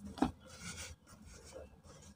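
Soft, dry cement block crumbling in the hands: a sharp crack about a quarter of a second in, then gritty rasping and rustling of crumbs and dust sifting through the fingers, fading to quieter crumbling.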